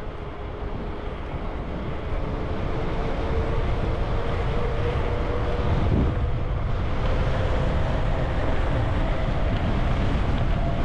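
Wind buffeting the action camera's microphone as a mountain bike rolls down a paved road. The wind grows louder over the first few seconds as speed builds, and a faint steady tone runs underneath it, rising a little in pitch partway through.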